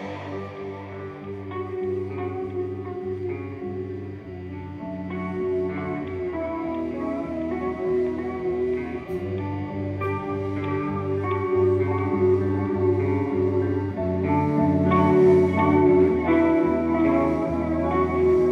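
Live rock band playing: electric guitars ringing out over repeating low notes in a quiet passage that grows louder from about halfway on.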